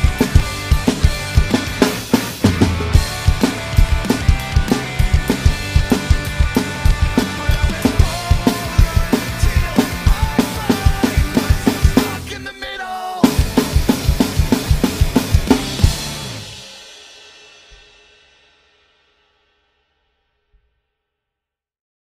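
Drum kit played along with the song's recording: kick, snare and cymbal hits over the backing track. The music drops out briefly just after halfway, comes back, then fades out to silence a few seconds before the end.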